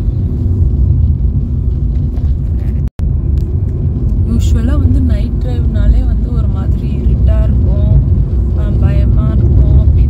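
Steady low rumble of engine and road noise inside the cabin of a Maruti Suzuki Ciaz being driven, broken by a momentary dropout about three seconds in. A person's voice is heard over the rumble from about four seconds in.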